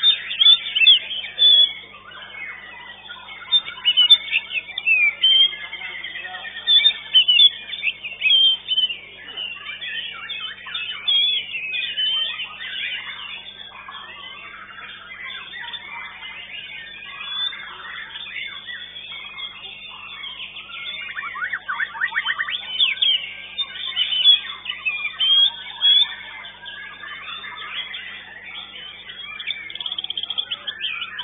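White-rumped shama (murai batu) singing continuously: a varied run of whistles, chirps and fast trills, with a longer rapid trill about two-thirds of the way through.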